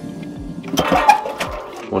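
Background music ends, then about a second of metallic scraping and clunking as a gloved hand works the fireplace insert's coil-spring door handle.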